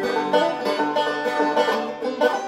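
Banjo playing: a steady run of plucked notes, dipping briefly in level near the end.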